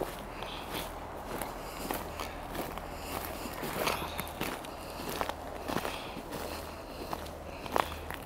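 Footsteps walking over grass and forest litter, with irregular crunches and snaps of sticks and needles underfoot. The sharpest snap comes near the end.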